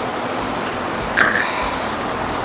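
A steady rushing hiss of running water, with one short breathy sound a little over a second in.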